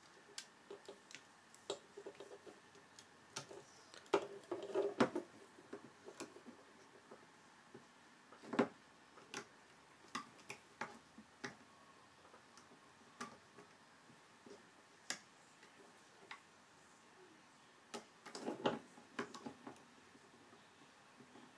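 Faint, scattered small clicks and taps of a plastic loom hook against the plastic pegs of a rubber-band loom as bands are hooked and looped up a chain. The clicks come irregularly, bunching into short flurries about four seconds in and again near the end.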